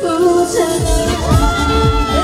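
A singer singing live into a microphone, amplified through PA speakers over recorded pop backing music. A bass-heavy beat comes in just under a second in.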